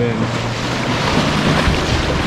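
Shallow surf washing and breaking around a jet ski's hull, with wind buffeting the microphone in a steady rush of noise.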